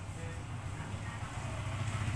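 A steady low background rumble, like a motor or engine running, with no distinct knocks or clicks.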